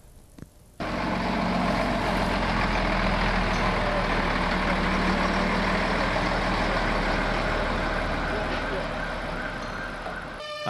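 A fire truck's engine running steadily close by. It cuts in abruptly about a second in, with voices in the background.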